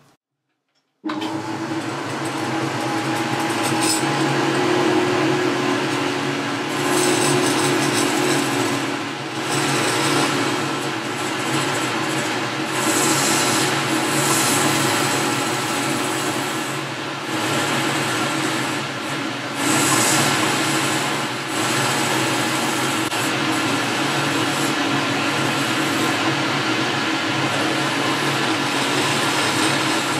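Boxford metal lathe running and taking a facing cut on a metal workpiece, a steady machine hum with the hiss of the cutting tool; it starts abruptly about a second in.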